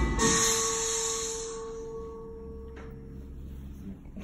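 A bell rings and its tone fades away over about three seconds, with a high hiss over the first second and a half.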